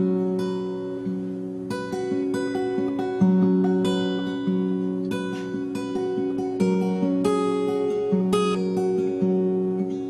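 Solo acoustic guitar playing a song's instrumental intro: picked notes ring on and overlap in a steady repeating pattern, with no voice yet.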